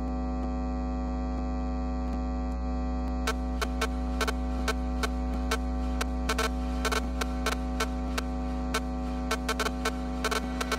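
A loud, steady electronic drone of several held tones, playing as a breakdown in an electronic dance music DJ mix. Sharp clicking ticks come in about three seconds in and grow denser toward the end, building back toward the music.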